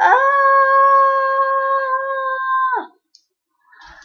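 A child's long, high-pitched cry of pain, 'owww', held at one pitch for nearly three seconds, then dropping as it breaks off. It comes from tape being pulled off her skin.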